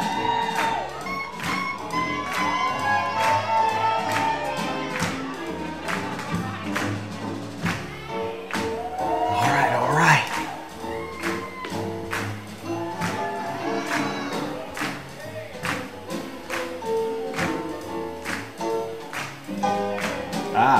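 Live swing jazz band playing, with horns carrying the melody over a steady drum beat. There is a short, louder burst about halfway through.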